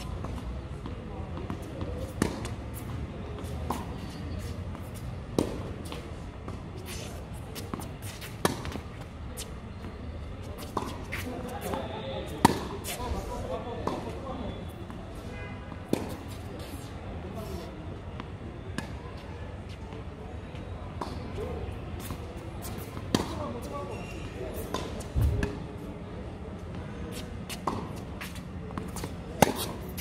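Tennis rally on a hard court: sharp pops of the ball off strings and court, irregularly a second or a few seconds apart, over a low steady hum.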